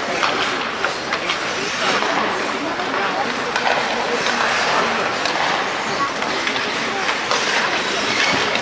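Ice hockey play: skate blades scraping and hissing on the ice, with scattered clacks of sticks and puck and indistinct shouting from players.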